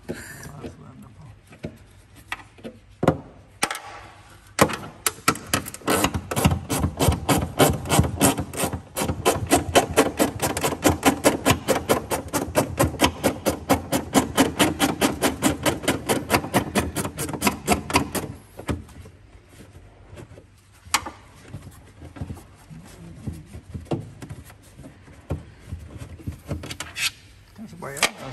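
Rapid rhythmic rubbing and scraping by gloved hands inside a car body's sheet-metal panel, about five strokes a second for some fourteen seconds, with a few knocks before it and scattered handling sounds after.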